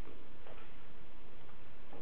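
Steady background hiss of the lecture recording, with no distinct sound events.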